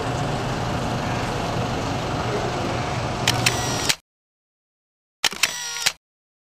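Steady outdoor street and vehicle noise for about three seconds, ending in two sharp clicks and cutting off abruptly to silence. About a second later comes a camera-shutter click with a short mechanical whirr.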